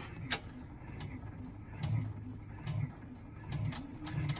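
Brother Entrepreneur Pro X ten-needle embroidery machine starting to stitch a design. Its mechanism gives irregular sharp clicks and short low whirring bursts over a steady hum.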